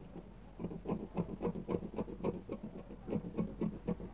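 Scissors snipping through woven dress fabric, a quick run of short snips several a second, starting about half a second in.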